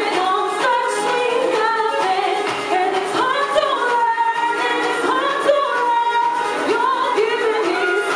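A voice singing a sustained, sliding melody over instrumental pop music.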